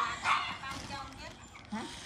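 A dog barking briefly near the start, then dying away.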